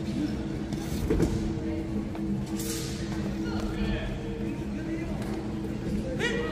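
Large sports-hall ambience during a wushu sanda bout: a steady low hum with voices in the background, and a single thump about a second in.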